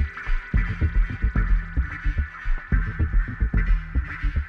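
Live electronic dance music played on synthesizers: a heavy, pulsing bass beat under steady sustained synth tones.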